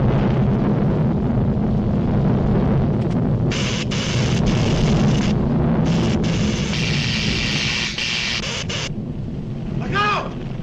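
Cartoon sound effects of a volcano: a loud, steady low rumble throughout. Over it comes a crackling, hissing electrical sparking from a machine, in two stretches: from about a third of the way in to halfway, and again from just past halfway until near the end.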